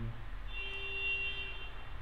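A steady high-pitched tone, about a second and a half long, starting about half a second in, over a low steady hum.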